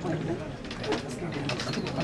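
Men talking in low, indistinct voices.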